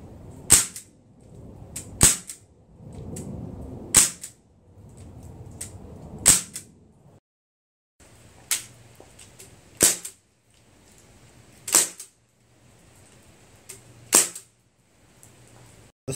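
Sig Sauer MPX .177 CO2 semi-automatic pellet rifle fired four times, about two seconds apart, each a short sharp shot. After a brief break, the Sig Sauer MCX, fed from a high-pressure air tank, fires four more shots at the same pace.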